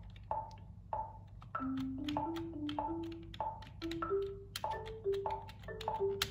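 A marimba software instrument plays a short riff of about ten notes on a pentatonic scale, climbing in pitch, over a metronome ticking at 97 beats a minute. The first few ticks come alone as a count-in before the notes start.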